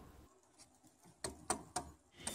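Near silence, broken by three short faint clicks about a quarter of a second apart, starting a little over a second in.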